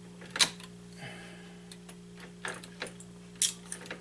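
A handful of sharp clicks and taps from shotshell components being handled at a reloading press as a seal wad is set into the hull, over a steady low hum. The loudest clicks come just under a second in and again about three and a half seconds in.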